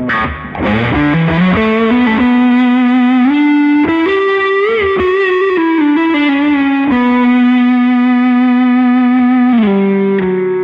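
PRS SE 277 baritone electric guitar, tuned to B standard, played with overdrive. It plays a slow line of long sustained notes: a slide up at the start, a bent note with vibrato about halfway, then a long held note near the end.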